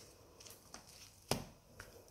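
Pages of a ring-bound planner being turned by hand: faint paper rustles and small clicks, with one sharper click just past a second in.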